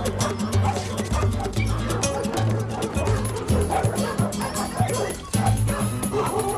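Several dogs barking and yipping in a squabble over a scrap of food, over background music with a steady, repeating bass line.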